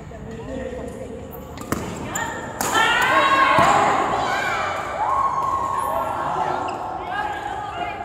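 Badminton rally: two sharp racket strikes on the shuttlecock a second apart, about two seconds in. They are followed by a louder run of overlapping high-pitched squeals from the players, echoing in a large hall.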